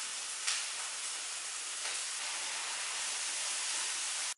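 Steady hiss of steam and sizzling from food cooking in a pan on the stove, with a short click about half a second in.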